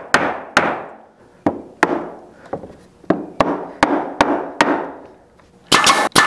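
Red rubber mallet knocking glued wooden legs into a rocking chair seat, about ten sharp blows in two runs with a short pause between. Near the end, a pneumatic nail gun fires with a loud snap.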